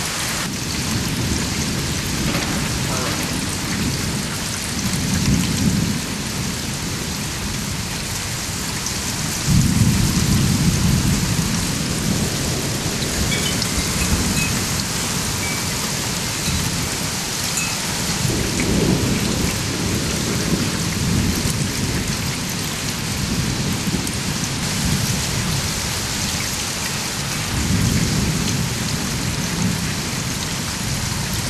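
Heavy rain falling steadily, with repeated low rolls of thunder rising and fading. The loudest rumble starts about a third of the way in, and others follow around two-thirds in and near the end.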